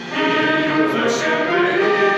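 A large group of voices singing a Polish Christmas carol (kolęda) together. The singing comes in just after a brief dip at the start, with no deep bass notes beneath it.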